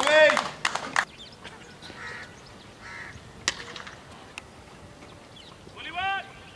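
Players shouting and clapping: a short loud shout at the start over a patter of hand claps for about a second, then faint scattered voices and an odd clap, and another short shout at the end.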